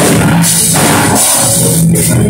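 Loud live worship band music with a drum kit keeping a steady beat.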